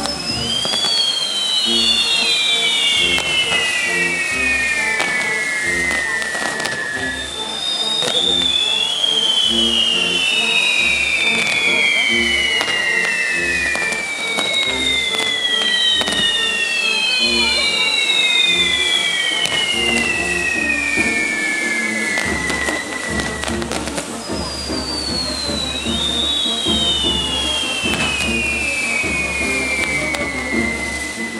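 Whistling fireworks on the spinning wheels of a castillo firework tower: several long whistles, often two or three at once, each falling steadily in pitch over about five seconds as it burns, with scattered crackling. Music with a steady beat plays underneath.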